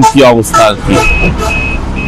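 A bus's reversing alarm beeping: a steady high tone, pulsing about twice a second, that starts about a second in. It sounds over a low engine rumble and voices calling out.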